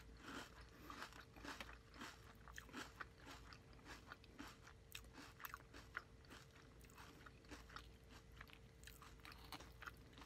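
Close-miked chewing of crunchy Fruity Pebbles cereal in milk: a steady run of small crunches and wet mouth clicks, with a sharp click right at the start and a faint steady hum underneath.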